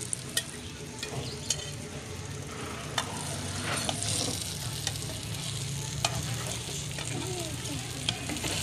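Batter-coated tomato rings sizzling in hot oil in a frying pan, with a metal spatula clicking and scraping against the pan several times.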